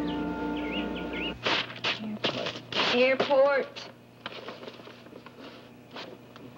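A sustained musical cue of held notes that stops about a second and a half in, followed by a person's voice in short bursts.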